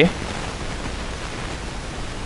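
Steady, even hiss of room noise in a lecture hall, with the tail of a man's spoken word right at the start.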